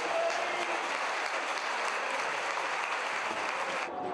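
Football stadium crowd applauding and cheering, a dense, steady wash of noise that cuts off abruptly near the end.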